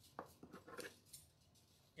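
Faint handling sounds of wired ribbon and a pair of scissors: one sharp click just after the start, then a few soft ticks and rustles.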